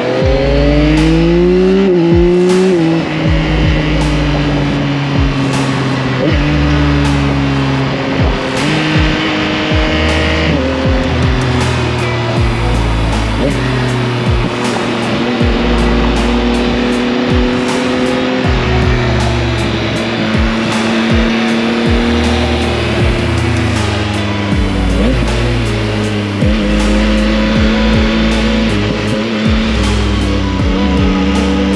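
Yamaha XSR900's 890 cc inline three-cylinder engine pulling up through the revs for the first couple of seconds, dropping back, then cruising at fairly steady revs. Background music with a deep bass line plays over it.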